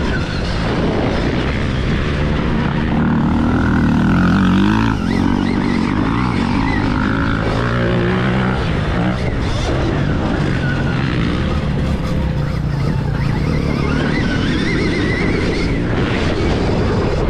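A Stark Varg electric dirt bike being ridden on a dirt motocross track. The electric motor's whine rises and falls with the throttle over a steady rumble of wind and tyres on dirt, loudest about four to five seconds in.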